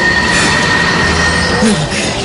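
Animated sound effect of a fire dragon being summoned: a loud, steady rushing noise of flames with a sustained high whine that cuts off near the end. A man gives a short "hmm" near the end.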